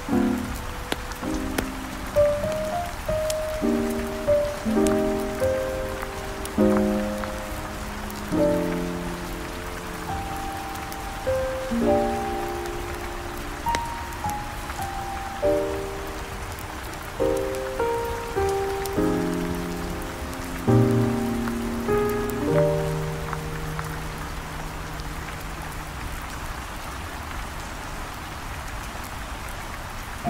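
Steady rain falling, under soft smooth jazz: chords struck every second or two that die away after each stroke. Past the middle the music thins to one long low held note and fades, leaving mostly the rain.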